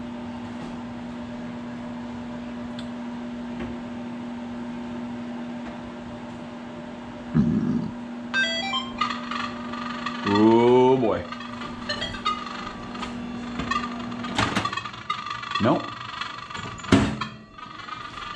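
Microwave oven running with a steady low hum while a Nokta Legend metal detector starts up: a quick run of rising beeps about eight seconds in, then a steady high threshold tone, with a loud rising tone just after. The hum stops with a click near the end, followed by another click.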